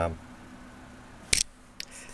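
Multimeter test probes being handled on a battery pack: one sharp click about a second and a third in, then a fainter tick, over a faint steady hum.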